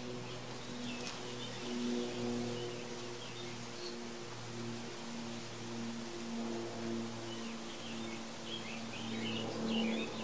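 Small birds chirping now and then, more busily near the end, over a steady low hum.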